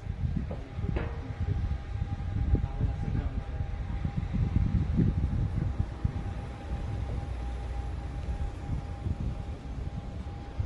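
Motor of a motorized bioclimatic pergola running with a steady hum as the roof louvres rotate, starting about a second in. A loud, uneven low rumble lies underneath.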